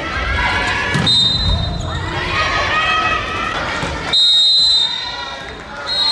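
Referee's whistle in an indoor volleyball match: a short blast about a second in and a longer, louder one around four seconds in, over voices and the thud of the ball on the court.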